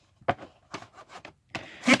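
Handling noise of a VHS cassette and its cardboard sleeve being moved about on carpet: a few short, scattered scrapes and rubs, with speech starting right at the end.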